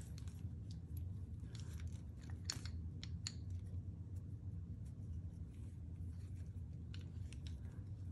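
Scattered light metallic clicks and taps as the threaded end of a beer tap handle is tried against the steel thread gauges on a thread checker stringer.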